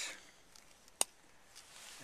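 A single sharp click about a second in, from a black powder revolver's cylinder being turned by hand at half cock during loading.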